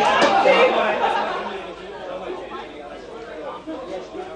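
Several people talking at once, no single voice clear: louder for the first second or so, then dying down to quieter background chatter.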